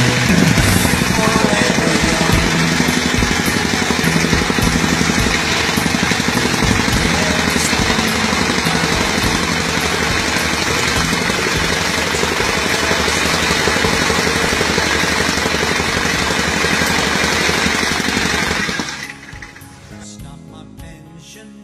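Handheld demolition hammer pounding rapidly and continuously into a concrete step, then stopping about a second before the end.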